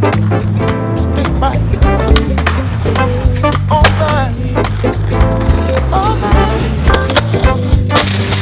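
Skateboard sounds: wheels rolling on concrete and pavers, with board pops, grinds and landings on ledges and rails. Background music plays under them.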